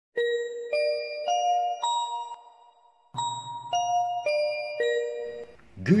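Public-address chime: four bell-like notes rising in pitch, a short pause, then the same four falling, the signal that an announcement follows. A voice begins speaking right at the end.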